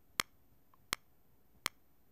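Studio One's metronome click ticking steadily at about 82 beats per minute, a short sharp click every three quarters of a second with near silence between.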